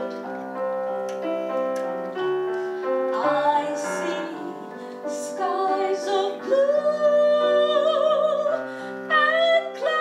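A woman singing a solo through a handheld microphone with piano accompaniment, her voice carrying vibrato and holding one long note about halfway through.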